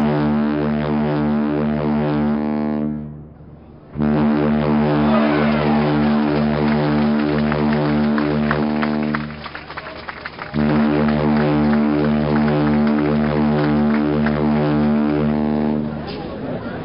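Ship's horn sounding three long, deep, steady blasts: the first ends about three seconds in, the second runs from about four to nine seconds, and the third starts about ten and a half seconds in and holds to the end.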